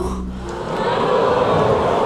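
A film soundtrack swell of many choir-like voices, building up over the first second and then holding.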